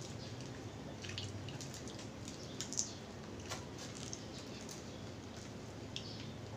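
Close-miked eating by hand: scattered small wet clicks and smacks as fingers work rice and fried milkfish on the plate and the mouth chews, with one sharper click a little before the middle. A faint low hum runs underneath.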